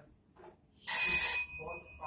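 A small bell is struck once about a second in, loud, with a high ring that lingers and fades slowly.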